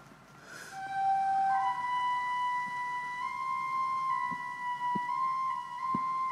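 Flute notes for the giant bamboo suling being blown as a call for reptiles: a couple of short notes, then one long held high note with slight steps in pitch.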